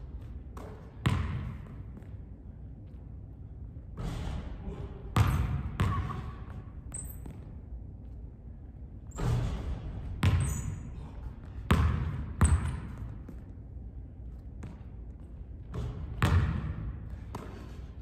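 A basketball bouncing on a hardwood gym court: about ten separate thuds at irregular intervals, each ringing on in the echo of the large hall.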